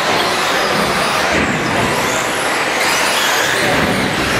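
1/10-scale 2WD short-course RC trucks racing on an indoor track: a steady hiss of motors and tyres, with faint whines rising and falling.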